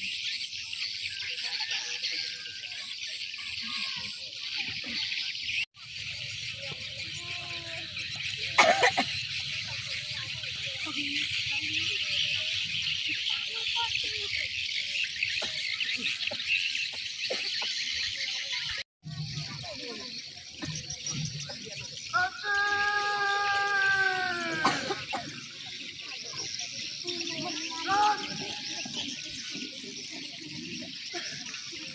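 Dense, steady chirring of insects fills the high range, with faint voices underneath. About 22 seconds in a voice calls out one long drawn-out shout lasting about three seconds.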